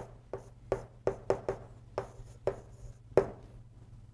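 Chalk writing on a chalkboard: a string of short, sharp taps and scratches as strokes are drawn, about eight of them, the loudest a little after three seconds.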